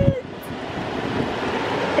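Steady hiss of cabin noise inside a Mercedes-Benz car as it reverses slowly under its automatic parking assist.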